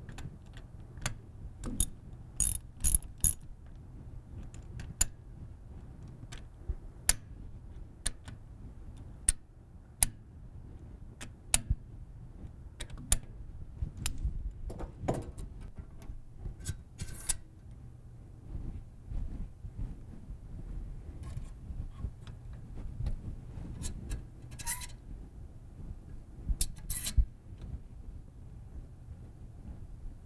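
Ratchet wrench clicking in short strokes as the steel bonnet bolts of a gas pressure regulator are tightened, followed by irregular metallic clicks and clinks of a wrench on the regulator's tubing fittings. Each click is sharp and separate, with small clusters near the start, midway and near the end.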